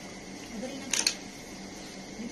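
A quick cluster of sharp clicks about a second in, from a small hard object being handled.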